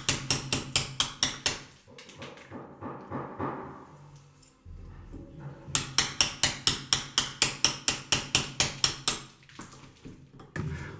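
Hammer tapping a blade to hack old glazing putty out of the wooden frame around a leaded stained-glass panel. There are two runs of quick, even blows, about five a second, separated by a quieter few seconds of faint scraping.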